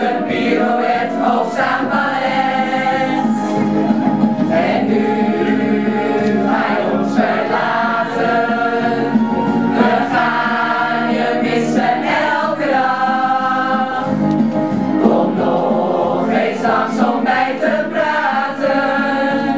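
A large group of amateur singers, mostly women with some men, singing a song together in chorus, continuously.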